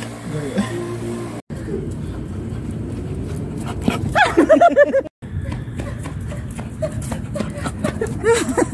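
Chow Chow puppy giving a quick run of short high calls that rise and fall in pitch about four seconds in, over a steady street-noise hum. The sound cuts out briefly twice.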